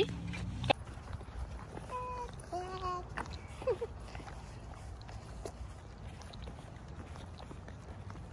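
Outdoor background with a few short, clear pitched calls a couple of seconds in, and faint footsteps on asphalt.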